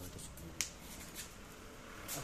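Faint voices talking in the background, with two sharp clicks about half a second apart, roughly half a second and a second in.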